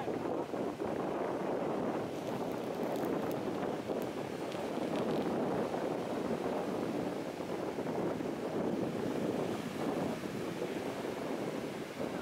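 Sea surf breaking steadily in the shallows of a sandy beach, mixed with wind buffeting the microphone.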